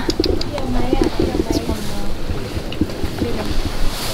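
Soft, short, low calls from waterfowl close by, coming in scattered bursts.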